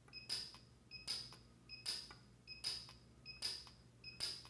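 PUK U5 micro TIG welder firing in rapid-fire mode, depositing filler wire onto a steel mold. Each weld pulse is a sharp crackling zap with a short high beep from the machine. It repeats evenly about every 0.8 s, five times.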